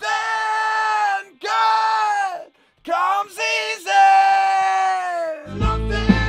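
Male rock lead singer recording an unaccompanied vocal take, belting long held high notes in three phrases with short breaks between. About five and a half seconds in, the full band mix with bass and drums comes in.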